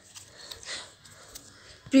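A quiet pause in a woman's narration: a soft breath near the microphone about two-thirds of a second in, with a few faint small clicks.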